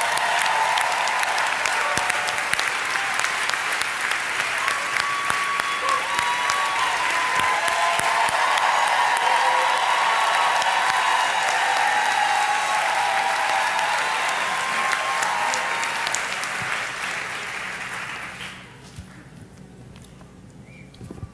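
Audience applauding, a long round of clapping that dies away about a second and a half before the end.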